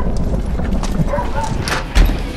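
Horse hooves clip-clopping on a cobbled street over a low rumble of street noise and indistinct voices, ending in a sharp loud thump.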